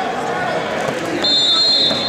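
Arena crowd noise, with spectators and coaches shouting over one another. A little past a second in, a shrill, steady whistle joins it and holds for most of a second.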